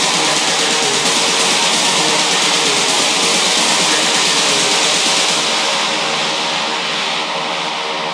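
Techno in a breakdown: a dense, noisy electronic synth wash over layered sustained tones, with no kick drum or bass. The treble fades away in the second half and the music gets slightly quieter near the end.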